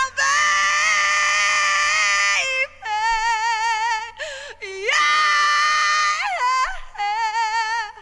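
Women's voices singing unaccompanied: a close multi-part harmony first, then a high voice holding long notes with wide vibrato and sliding between pitches in a wailing style.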